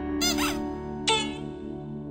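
Background music holding a steady chord, with two short squeaky comic sound effects laid over it, the first about a quarter second in and the second about a second in.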